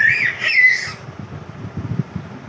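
A toddler's high-pitched squeal that rises and falls in pitch through the first second, followed by a few soft low bumps.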